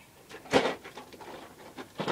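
A single short thump about half a second in, then faint low rustling.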